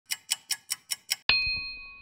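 Logo sound effect: six quick clock ticks, about five a second, then a single bright bell-like ding. The ding is the loudest sound and rings on, fading away.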